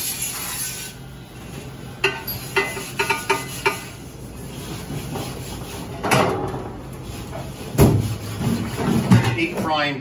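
Pre-rinse sprayer hissing briefly onto stainless steel fryer parts in a plastic dish rack, then a quick run of metal clinks with short ringing, and two louder knocks later as the parts are shifted in the rack.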